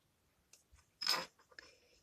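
A felt-tip marker squeaking briefly on notepad paper about a second in, with a fainter squeak near the end.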